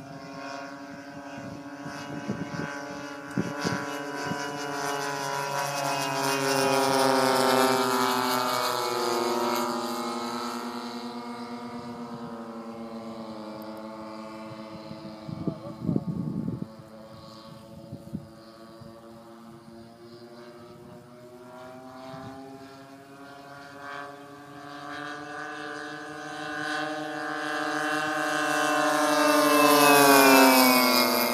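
Engine and propeller drone of a giant radio-controlled model airplane flying circuits. It grows loud and drops in pitch as the plane passes about a quarter of the way in, fades while it is far off, then swells again as the plane comes in low overhead near the end.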